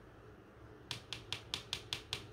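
Tarot deck being shuffled by hand: a quick regular run of crisp card clicks, about five a second, starting about a second in.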